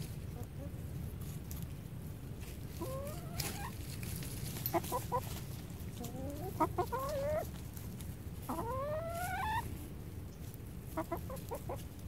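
Backyard hens clucking and calling as they forage: a handful of drawn-out calls that rise in pitch, the longest a little past the middle, and short runs of quick clucks in between.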